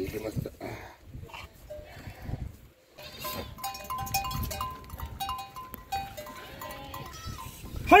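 Goats bleating, with a tune of short held notes from about three seconds in.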